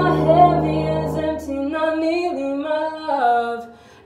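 A woman singing a slow melody with no accompaniment, after a held upright-piano chord rings out and dies away in the first second or so. Her voice trails off just before the end.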